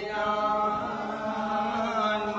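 A group of men chanting together in unison, holding a long steady line, as in a Poorakkali ritual song sung around the temple lamp.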